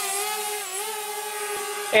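DJI Spark mini quadcopter hovering, its four propellers giving a steady high-pitched buzzing whine; the pitch dips briefly under a second in as the drone changes its thrust.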